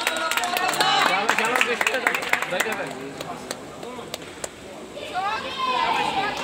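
Voices in a sports hall, with scattered sharp clicks of table tennis balls, dense in the first three seconds and sparser after.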